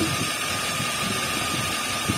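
Steady background hiss with a faint, steady high whine running under it.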